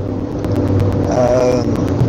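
Steady car engine and road noise inside a moving car.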